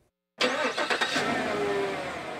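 A car engine running, cutting in abruptly about half a second in after near silence.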